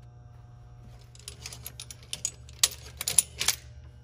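Steel locking clamps clinking and clattering against one another as they are pulled off a hanging rack: a quick run of sharp metallic clicks over a couple of seconds.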